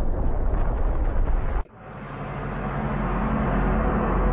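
Deep rumbling sound effect for a catastrophic impact, cutting off abruptly about one and a half seconds in, then a new low rumble with a steady drone fading back up.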